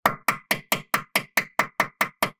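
Hammer tapping a T30 Torx bit seated in a W211 E63 AMG's brake rotor set screw, to break free rust binding the screw. About ten quick, even taps, roughly four to five a second, each with a short metallic ring.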